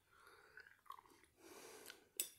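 Faint chewing and soft mouth sounds of someone eating a mouthful of soup, with a few small clicks.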